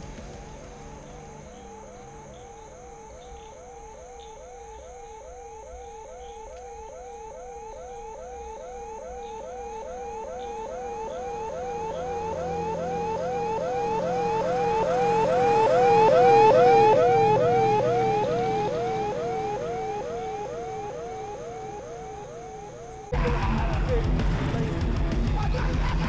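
A vehicle siren yelping in a fast repeating sweep, about twice a second, growing louder as the vehicle approaches, loudest about two-thirds of the way through, then fading as it passes. Near the end it is cut off suddenly by loud music.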